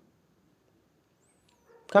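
Near silence, then a man's voice begins speaking just before the end.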